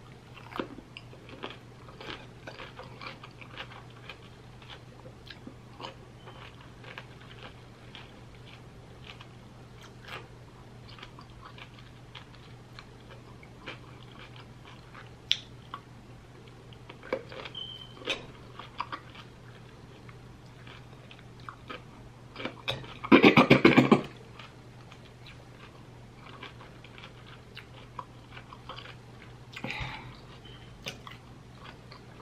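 Close chewing of crisp raw cucumber slices, with faint crunches and wet clicks of the mouth throughout. About three quarters of the way through, a loud voiced sound from the eater lasts about a second and is the loudest thing heard.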